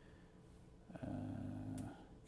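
About a second of faint room tone, then a man's drawn-out, flat "uhh" filler sound that lasts under a second.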